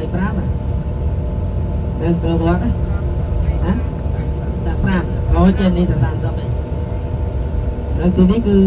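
Cabin of a moving King Long coach bus: a steady low engine and road rumble with a faint steady hum, and a person talking in short stretches over it.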